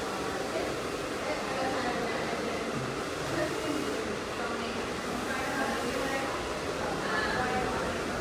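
Steady room noise in a hair salon, with faint voices talking in the background.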